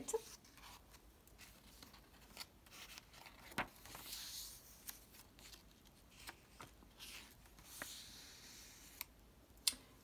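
Paper and card pages of a handmade junk journal being turned and handled. Soft rustles and swishes of paper, with scattered light taps and clicks.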